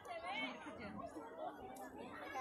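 Only speech: indistinct chatter of voices.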